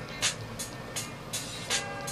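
Graphite pencil scratching on drawing paper in a series of short shading strokes, a few each second, over faint background music.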